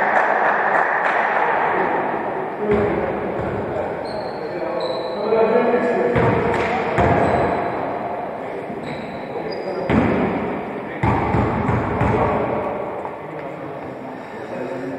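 Players' voices echoing in a large sports hall, with a few thuds of a basketball bouncing on the wooden floor.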